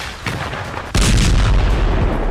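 A few sharp gunfire-like cracks, then about a second in a large explosion goes off: a sudden loud blast followed by a heavy low rumble.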